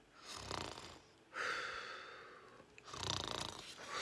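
A woman imitating snoring: two snores, each a low rattling breath in followed by a long hissing breath out.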